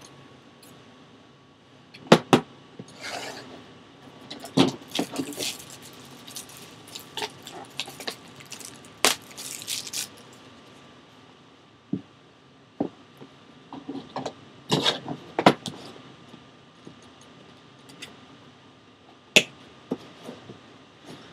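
A shrink-wrapped cardboard card box being handled on a table: scattered knocks and taps, short rustling scrapes and crinkles of the plastic wrap as it is turned over, with a sharp click near the end as scissors are picked up.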